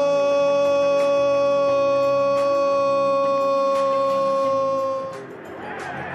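A TV football commentator's long drawn-out goal cry, 'Gooool', held on one steady note and fading out about five seconds in. Ordinary commentary speech begins just after it.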